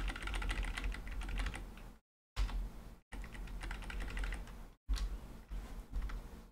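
Computer keyboard keys pressed in quick succession, a rapid run of clicks broken by a few brief silences.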